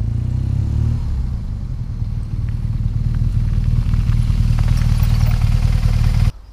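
BMW R1200GS motorcycle's air-cooled boxer twin running as the bike rides up and pulls in, a deep steady rumble that grows louder toward the end.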